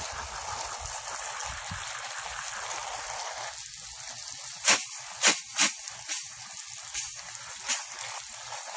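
Spray from a garden hose rinsing bare feet on grass: a steady hiss of water, which from about halfway through thins and comes in several short, louder splashes.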